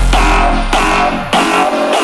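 Instrumental passage of an electronic dance track, with repeated note attacks over heavy bass that drops out about two-thirds of the way through.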